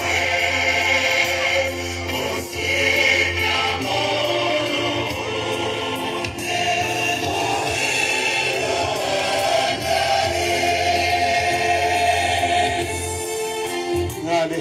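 A crowd of many voices singing together like a choir, with a steady low hum underneath.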